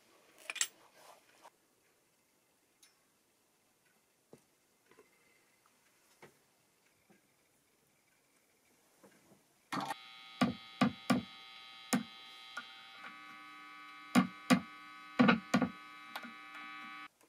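A few small clicks of a tool working the plastic pickguard in the first second or so, then near silence. About ten seconds in, a steady electrical mains hum with a buzzy edge comes on, with a string of sharp clicks and knocks over it.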